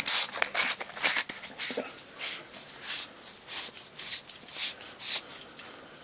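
Threaded aluminium tail section of a flashlight being screwed onto its body by hand: a run of short, irregular scraping strokes as the oiled threads turn, about one or two a second, with hands rubbing on the knurled grip.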